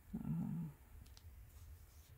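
A brief wordless murmur from a woman's voice, about half a second long near the start, followed by a couple of faint clicks from handling the embroidery.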